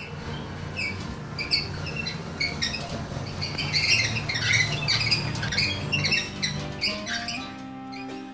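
A folding rollaway bed being wheeled along a hallway: its wheels and metal frame squeak in short, irregular chirps over a low rolling rumble. Music comes in near the end.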